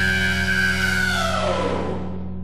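The closing seconds of a punk rock song: one long held note with many overtones that slides down in pitch about a second and a half in and dies away, over a steady low hum.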